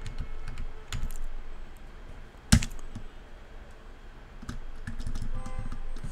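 Typing on a computer keyboard: a run of irregular keystrokes, with one sharper, louder key strike about two and a half seconds in.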